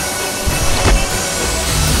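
Dramatic TV-serial background score with sound-effect hits: two sharp impacts about half a second and a second in, under a dense, rising swell.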